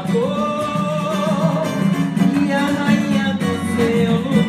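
Live samba band playing: a woman's singing voice over plucked strings and percussion.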